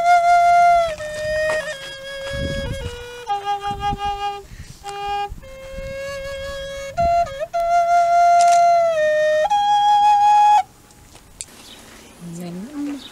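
End-blown flute playing a slow melody of long held notes, stepping mostly downward with a few short notes and small bends in pitch. It stops about ten and a half seconds in.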